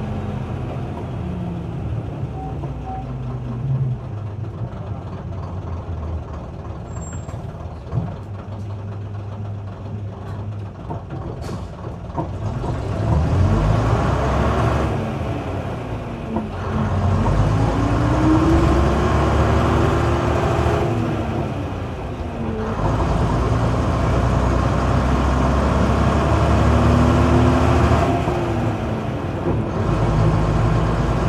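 Leyland Atlantean double-decker bus with its Leyland O.680 diesel engine, running at low revs for about the first twelve seconds, then revving up and dropping back three times as the semi-automatic gearbox changes up. A short air hiss comes about eleven seconds in.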